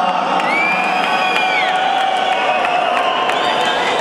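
Crowd of spectators cheering and shouting, a dense wash of many voices, with a long high-pitched call rising above it about half a second in and other shorter calls after.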